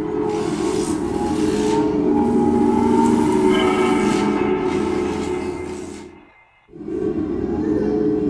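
Dark, droning horror-film score with sustained low tones under a rumbling, grinding texture. It fades out about six seconds in, is nearly silent for a moment, then cuts back in sharply about seven seconds in.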